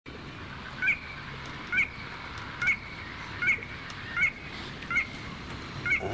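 A bird giving a short, sharp call over and over at an even pace, seven times, a little under once a second.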